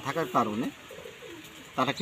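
A dove cooing faintly: a few soft, low notes heard in a short pause between a man's words.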